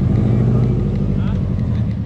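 Subaru WRX's turbocharged flat-four engine idling as the car creeps along, a steady low rumble that eases slightly near the end.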